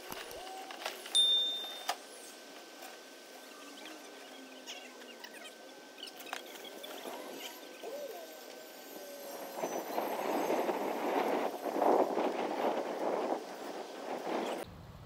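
Quiet outdoor background with a short, high electronic ding and click about a second in, the kind of sound effect that goes with an animated subscribe button. Near the end comes a few seconds of louder rough noise.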